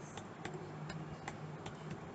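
Computer keyboard keys tapped one at a time as digits are typed: faint, separate clicks at about three a second.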